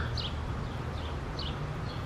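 A few short, high bird chirps, spaced apart, over a steady low background hum.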